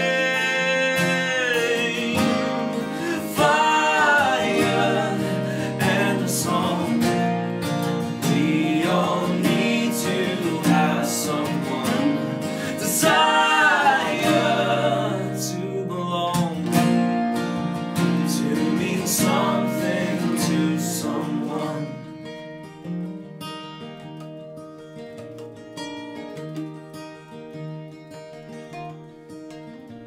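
Live acoustic folk-rock band: strummed acoustic guitar and a plucked mandolin-family instrument under sung vocals. About 22 seconds in the singing stops and the playing drops to a quieter instrumental passage.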